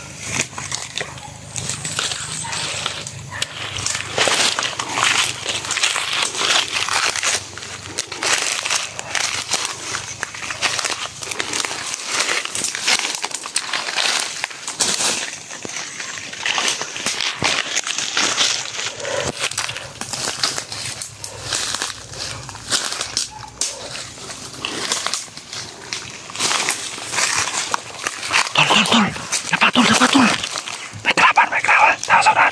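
Footsteps crunching through dry leaf litter and undergrowth, with brush rustling against the body, in a steady irregular crackle.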